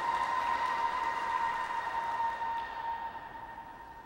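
Scattered applause and cheering from spectators in an ice rink, with a steady high tone over it, all fading away.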